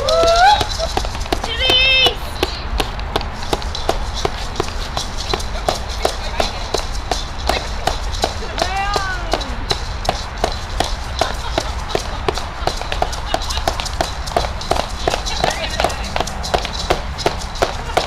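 A hand drum beaten in a steady rhythm, about two to three beats a second, with a few voices whooping near the start and about nine seconds in.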